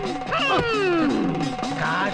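Film soundtrack: background music with a loud, howl-like vocal cry that starts about half a second in and falls steeply in pitch.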